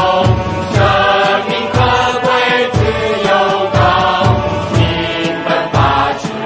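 A song with voices singing Chinese lyrics over a steady beat of about two low drum hits a second.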